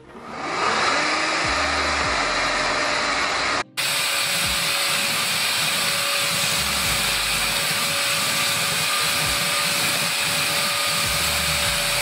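Hoover ONEPWR FloorMate Jet cordless hard-floor cleaner running steadily, its motor and brush roll making a loud even whir as it is pushed across a wood floor. The sound builds up over the first second and breaks off for an instant about four seconds in.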